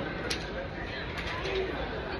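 Driving-range ambience inside an air-supported golf dome: a steady low hum with faint voices, and one sharp click of a club striking a ball in a nearby bay about a third of a second in.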